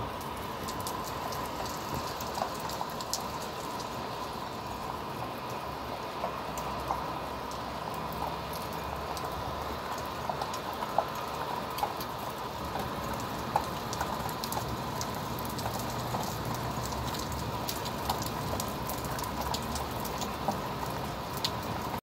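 Heavy downpour: a steady hiss of rain with many individual large drops clicking and pattering on nearby surfaces.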